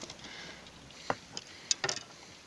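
Low background noise with a few light clicks and taps: one about a second in, then a small cluster near the end.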